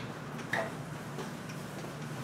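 A few light footsteps and taps on a hard floor as a person crosses to a whiteboard and starts wiping it with an eraser, with one brief falling squeak about half a second in, over a steady low room hum.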